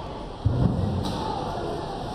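A single dull, low thump about half a second in, over a steady background noise.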